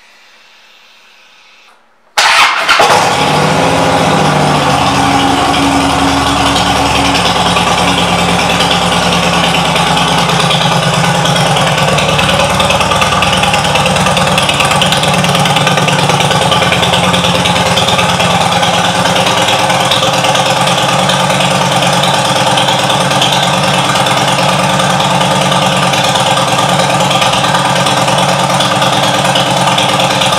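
2010 Harley-Davidson Dyna Wide Glide's air-cooled Twin Cam 96 V-twin starting up about two seconds in, then running at a steady idle.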